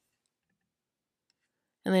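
Near silence, then a woman's voice starts speaking near the end.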